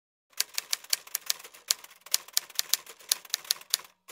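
Typewriter keys clacking in quick succession, about five strokes a second, as a typing sound effect for text appearing letter by letter. The clacking starts about a third of a second in and pauses briefly near the end.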